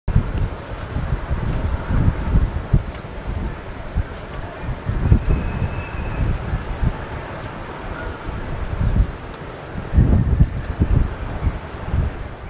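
Wind buffeting the microphone in irregular gusts, a rumbling that rises and falls throughout.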